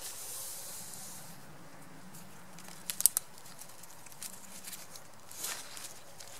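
Synthetic camouflage fabric rustling and thin cord being pulled and handled while it is tied around a tree trunk, with a soft hiss at first and a few quick clicks about three seconds in.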